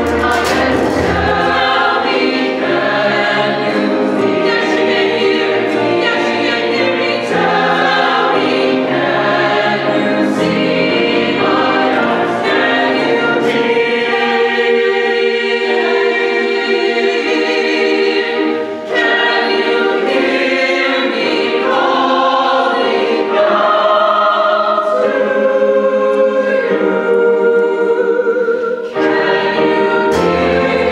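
Mixed choir of men's and women's voices singing in sustained harmony, with brief dips between phrases about two-thirds of the way in and again near the end.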